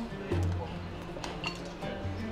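Background music with low bass notes, and a few light clinks of a metal fork against a plate.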